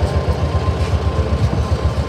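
Tuk-tuk (auto-rickshaw) engine idling while stopped, with a rapid, even pulsing.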